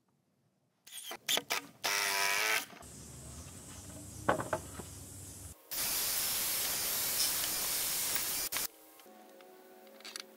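Cordless drill working in wooden boards in several short, cut-together runs; the longest and loudest is a steady run of about three seconds from just before six seconds in, as a twist bit bores through a thick stacked 2x8 beam.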